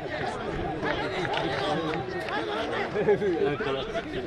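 Several men's voices calling and shouting over one another on a rugby field during play at a ruck, with a few short sharp knocks.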